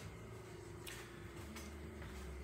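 Quiet garage room tone: a faint steady hum, with one light click just under a second in.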